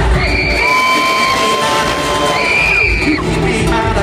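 Live music through an arena PA, recorded from among the audience, with the crowd cheering. Two long held high notes, each about a second, end in short falling slides.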